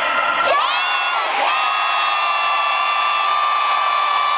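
A man's long drawn-out shout over a stadium microphone, held on nearly one pitch for about three and a half seconds from about a second in, over crowd noise.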